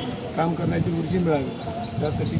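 A bird chirping: a fast run of short, high notes that starts about half a second in and carries on.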